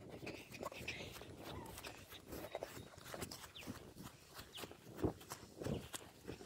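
Footsteps of someone hurrying across grass, a run of soft, irregular steps with rustling, with a couple of louder steps near the end.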